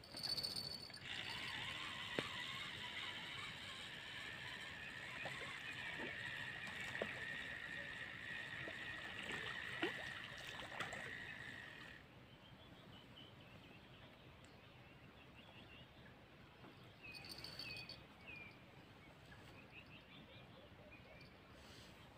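Fishing reel being cranked in a steady whirr for about eleven seconds as a small fish is reeled in, stopping abruptly.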